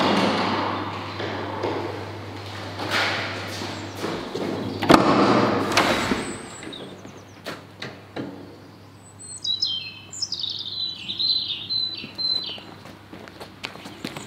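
Knocks and thuds of doors and footsteps over a low hum and rushing noise in the first half. From about two-thirds of the way in, a songbird sings a string of short, high chirping phrases.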